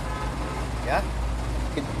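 Steady low rumble of passing road traffic.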